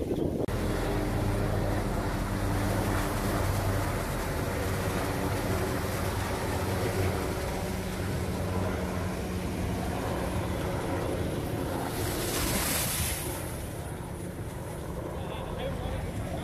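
Ocean surf washing on the beach under a steady engine drone that fades out about halfway through; a louder rush of surf or wind comes about three-quarters of the way in.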